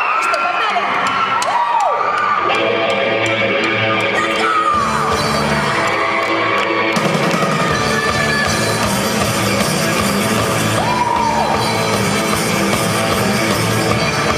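A live rock band starting a song: a pitched instrument leads in over a row of light ticks, then bass and drums come in about five seconds in and the full band is playing by about seven seconds. Audience members scream high and shrill over it, loudest near the start and again late on.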